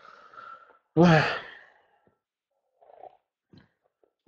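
A man's short voiced sigh about a second in, followed by a few faint rustles.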